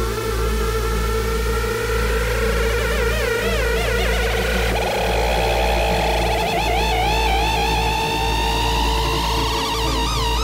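Electronic dance music: a steady pulsing bass under high synthesizer lines that waver up and down in pitch.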